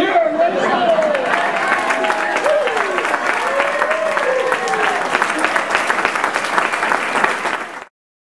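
Audience applauding, with voices cheering and laughing over the clapping; the sound cuts off suddenly just before the end.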